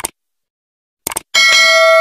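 Mouse-click sound effects followed by a notification-bell sound effect: a short click at the start, a quick double click about a second in, then a bright bell ding that rings on and slowly fades.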